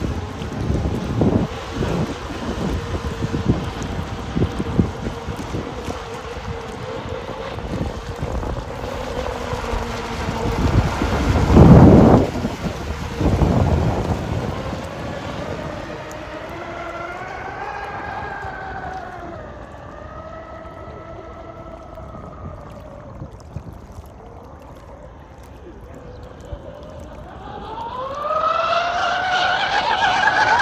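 Twin brushless electric motors of a 24S RC catamaran speedboat whining at speed, the pitch rising and falling in long sweeps as the throttle changes. Wind on the microphone is mixed in during the first half, with a loud gust about twelve seconds in. Near the end the whine climbs and grows louder as the boat accelerates.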